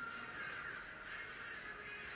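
Quiet room background with faint, distant animal calls.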